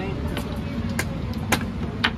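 Wooden chess pieces clacked down on the board and a chess clock tapped during a fast blitz game: three sharp clacks about half a second apart, the last two loudest, over a steady low background rumble.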